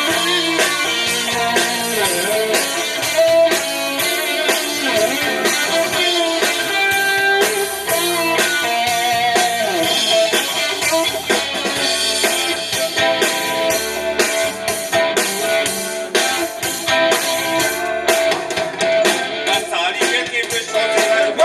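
Live rock band playing, with electric guitars over a drum kit keeping a steady beat, and no singing.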